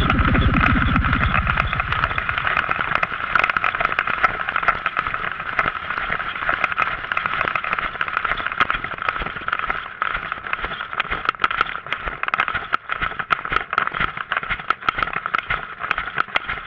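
Rattling, crackling noise from an action camera jolted about on horseback at a gallop, full of irregular sharp clicks. Music fades out in the first two seconds.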